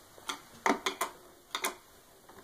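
A screwdriver working a screw in a hoverboard's plastic shell: about six sharp, irregular clicks over two seconds.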